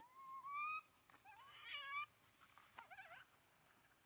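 Infant macaque crying: three high, rising cries. The first two last under a second each and the third is shorter and wavering.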